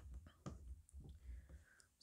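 A few faint clicks and taps from a Stamparatus stamping tool as its clear hinged plate, with an inked stamp on it, is pressed down by hand onto cardstock.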